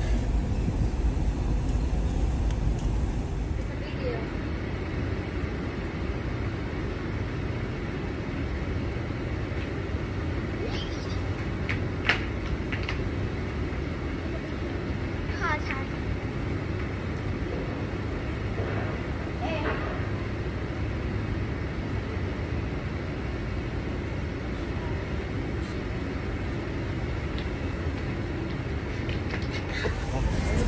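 Steady low rumble and hiss of outdoor ambience on an open ship deck, with brief faint voices now and then.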